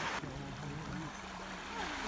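Small, gentle waves lapping at the edge of a sandy, pebbly shore on a windless day.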